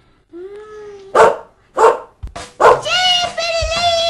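A small dog gives a short whine, then barks three times in quick succession. A long, high held cry follows near the end.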